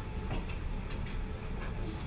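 Motorised treadmill running with a small child walking on its belt: a steady low hum and belt rumble, with light footfalls about twice a second.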